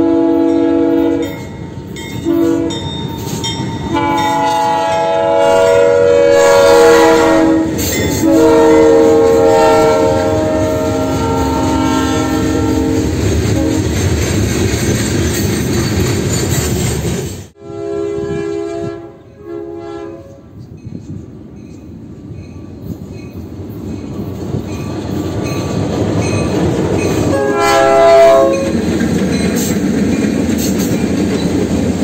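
Freight diesel locomotive air horn sounding a series of blasts, a short one then two long ones, over the rumble of the train. After a sudden drop, two short blasts follow, then the steady rumble and wheel clatter of the passing train, with one more short horn blast near the end.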